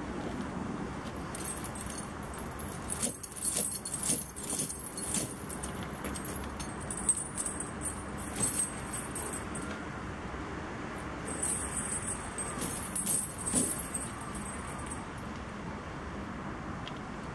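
Steel tyre snow chain rattling and clinking as its links are handled and pulled around a truck's drive-axle tyre, in three spells of jingling with sharp clinks, over a steady low rumble.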